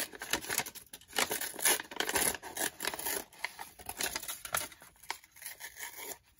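A coffee-stained paper book page being torn by hand in short, irregular rips, busiest in the first three seconds and thinning out toward the end.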